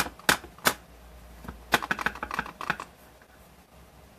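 Clear acrylic stamp block clicking against an ink pad as a rubber stamp is inked: three sharp clicks in the first second, then a quick run of lighter taps and clicks.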